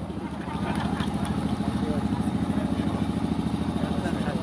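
An engine idling steadily, a low hum with a rapid, even pulse.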